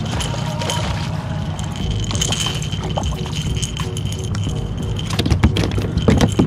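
Hooked speckled trout splashing and thrashing at the water's surface as it is reeled in to a kayak, with a quick run of clicks and knocks near the end as it is swung aboard.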